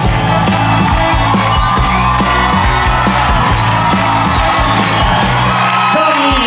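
Live band playing an instrumental break with a steady beat, with an audience whooping and cheering over it.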